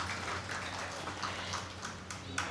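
A pause in speech over a microphone: a steady low electrical hum from the sound system under faint room noise.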